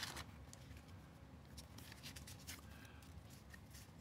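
Faint rustle and small taps of a deck of game cards being lifted out of a box insert and handled.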